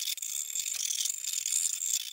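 Metal spatula scraping dried chromium(III) carbonate off a glass plate: an irregular, scratchy scraping of metal on glass and crumbly powder.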